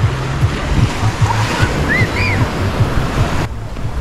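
Small waves breaking and washing up a sandy beach, with wind buffeting the microphone. The surf noise drops off suddenly just before the end.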